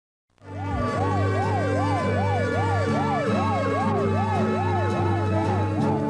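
An emergency-vehicle siren wailing up and down about two and a half times a second, over sustained music notes. It comes in about half a second in, after silence.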